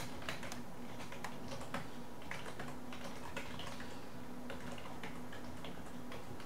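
Typing on a computer keyboard: a run of quick, irregular key clicks as a terminal command is keyed in, over a faint steady hum.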